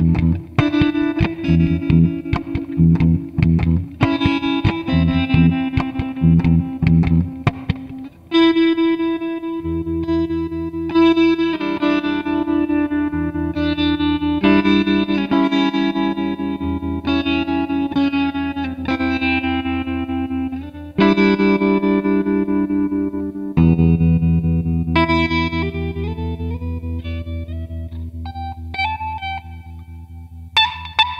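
Guitar played through effects, with no singing: a rhythmic, chopped part for about the first eight seconds, then slower picked notes that ring on and gradually fade toward the end.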